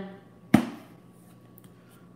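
A single sharp knock from the reel's cardboard box being handled, about half a second in.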